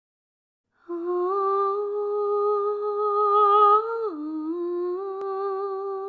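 A voice humming, starting about a second in: one long held note that slides down at about four seconds, then a second long held note a little lower.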